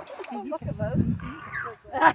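Dogs giving short, high calls that bend in pitch, mixed with people's background chatter.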